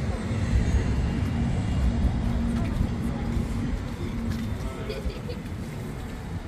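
Steady road-traffic rumble with a low engine hum, mixed with indistinct voices of people passing by.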